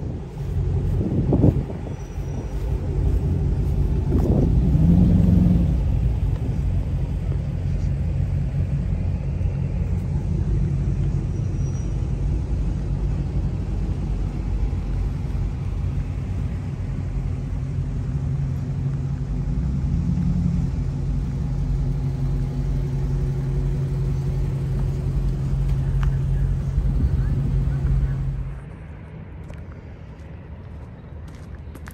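Engines of a line of Dodge Challengers idling, a steady low rumble, swelling louder with a rising note about four to five seconds in. The rumble drops off suddenly shortly before the end.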